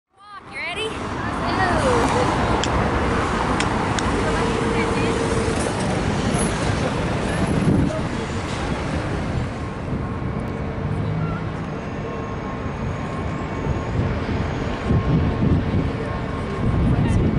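City street traffic noise: cars and scooters driving past in a steady wash of road noise, with a few brief high chirps near the start. The high, hissy part of the noise thins out about ten seconds in.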